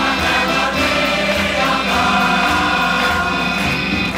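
Mixed choir of sopranos, altos and men singing a sustained passage in a live concert recording, with regular low accompaniment notes underneath.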